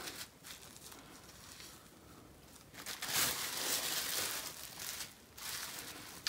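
Bubble wrap crinkling as it is folded back over wet felt and smoothed down by hand, louder in the second half.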